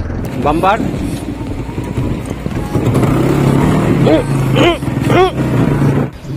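Motorcycle engine running while riding, a steady low drone, with short wavering sung vocal phrases over it.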